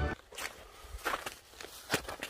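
Footsteps on snow-covered lake ice, three or four short steps at an uneven pace.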